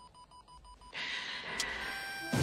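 Film soundtrack at a hushed moment: a faint, repeating electronic beep over near silence, then about a second in a soft hissing wash with high held tones comes in.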